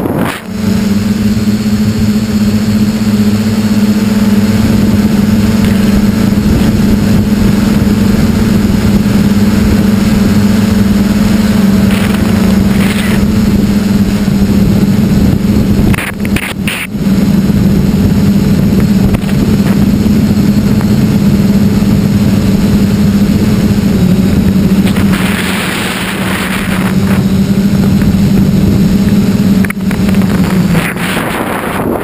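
A tricopter's electric motors and propellers humming steadily in flight, picked up by its onboard camera, with wind rushing over the microphone. The hum drops out briefly twice, at the start and about halfway through, and the wind hiss swells for a couple of seconds near the end.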